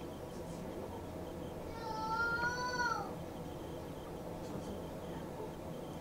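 A single high, drawn-out call lasting a little over a second, starting just under two seconds in, holding its pitch and then falling away at the end. A steady low hum runs underneath.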